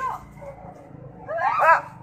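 A dog whining and yipping in one short, high-pitched burst about a second and a half in.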